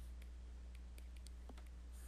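Faint, irregular clicks of a stylus tapping a tablet screen while words are handwritten, over a low steady hum.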